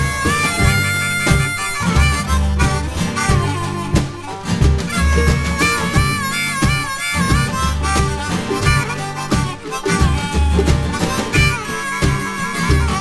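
Instrumental break of a bluegrass-style string band with a rack-held harmonica playing the lead, its notes wavering and bending, over banjo and mandolin picking. Upright bass and kick drum keep a steady low beat underneath.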